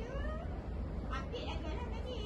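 Indistinct voices echoing in a large hall over a steady low hum. Near the start one voice glides up and down in pitch.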